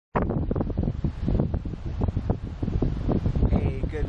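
Wind buffeting the camera's microphone: a heavy, gusting rumble that drowns out other sound.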